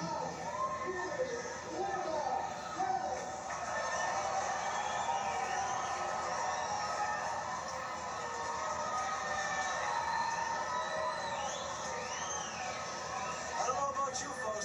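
Crowd of spectators chattering and yelling all at once, with a few shrill, high-pitched cries rising and falling near the end.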